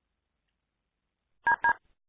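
Two short electronic beeps near the end, each a pair of tones like a telephone keypad (DTMF) tone, about a fifth of a second apart.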